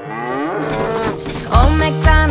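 A cow mooing: one long moo that falls in pitch, used as a sound effect in a children's song. The song's backing music comes back in near the end.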